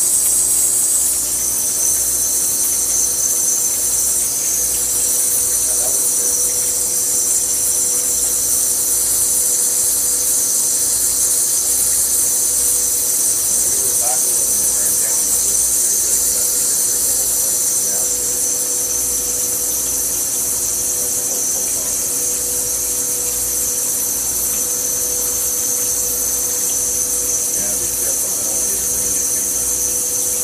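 Wire EDM machine cutting: the spark erosion along the 0.010-inch wire under a water flush makes a steady, high-pitched sizzling hiss over a steady machine hum, the hiss dropping slightly in pitch about a second in.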